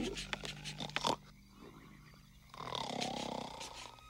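Loud cartoon snoring, a long low snore that ends about a second in, with a pencil scratching quickly across a paper map over it. A second snore with a whistling glide comes near the end.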